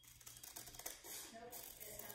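Scissors snipping through a sheet of paper: a rapid run of faint, crisp little cuts.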